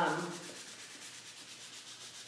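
Fine sandpaper rubbed lightly over a slick-surfaced printed image on paper, a faint steady rubbing. The sanding scuffs the slick surface so that gesso painted over it won't bubble up.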